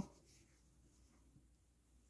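Near silence: room tone with faint rustling of fabric as hands handle a doll's soft booties, and one small tick partway through.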